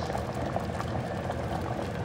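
Water at a rolling boil in a DASH DMC100WH Express electric hot pot with its lid open: steady bubbling with small scattered pops.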